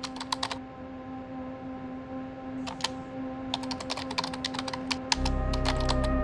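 Computer keyboard typing, keys clicking in quick runs with short pauses between them, over a sustained ambient synth drone. A deeper low layer joins the drone about five seconds in.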